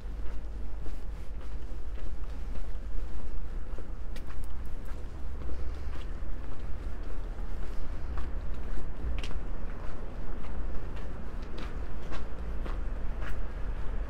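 Footsteps on snow-dusted cobblestones, as irregular sharp steps over a steady low rumble.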